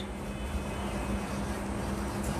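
Steady low background hum and rumble with a faint steady tone and no sharp events.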